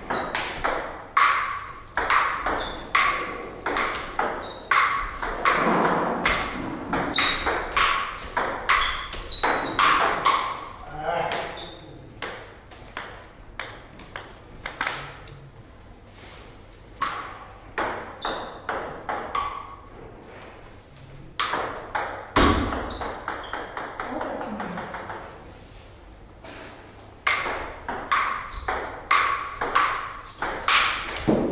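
Table tennis rallies: the ball clicks sharply off the paddles and the table in quick back-and-forth runs of hits, with short pauses between points.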